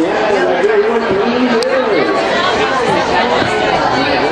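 Several people talking at once, their voices overlapping into steady chatter with no one voice standing out.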